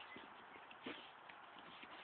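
Near silence, with a few faint taps, the clearest just under a second in.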